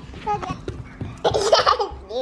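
A young child laughing: a short giggle about a third of a second in, then a longer, louder burst of laughter in the second half.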